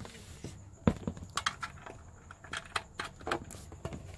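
Handling noise: a scattered series of small clicks and knocks as hands work a USB charging cable and a wireless microphone. The sharpest knock comes about a second in.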